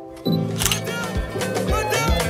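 A soft held chord fades. About a quarter second in comes a camera shutter click, and new music with singing starts.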